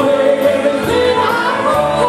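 Live band playing, with voices singing together over electric guitar, upright bass and drums; a cymbal keeps a steady beat about twice a second.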